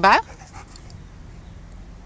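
A dog panting faintly and softly, after a spoken word at the very start.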